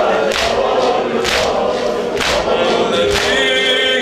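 Male voices singing a Persian mourning lament (noheh) in chorus with a lead reciter on a microphone. A sharp, even beat falls about once a second.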